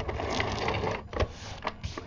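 Scotch Advanced Tape Glider (ATG tape gun) run across paper, its gears and tape spool whirring for about a second as it lays down double-sided adhesive, followed by a few separate clicks.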